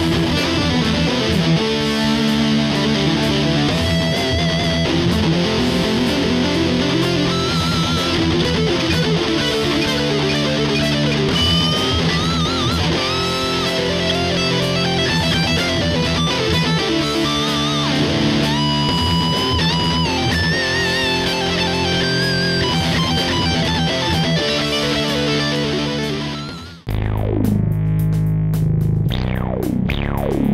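Heavily distorted electric guitar through a Korg Pandora PX5D: a looped metal rhythm, with lead lines played over it that bend and waver from about a third of the way in. Near the end the guitar cuts off suddenly and low plucked bass guitar notes take over.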